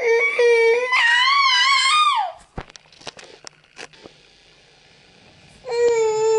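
Baby crying: a loud, wavering wail that rises in pitch and breaks off about two seconds in. A few clicks follow in a quieter stretch, and a second cry starts near the end.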